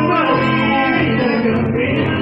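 Live chamamé: a man singing over a button accordion, a bandoneón and an acoustic guitar.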